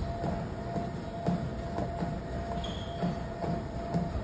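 Motorized treadmill running with a steady motor whine and belt rumble, as someone walks on it with soft footfalls about twice a second.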